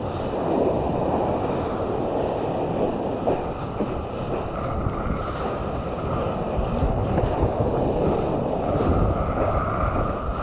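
Rushing water and spray of a surfboard riding along a breaking wave, with wind buffeting the mouth-mounted camera's microphone in a steady low rumble.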